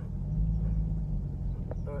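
Jaguar XFR's supercharged V8 running steadily as the car drives, a low, even hum heard from inside the cabin.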